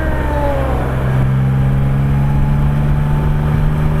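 Can-Am Spyder F3's Rotax three-cylinder engine as the rider slows down: its whine falls over the first second, then settles into a steady hum, with wind and road noise.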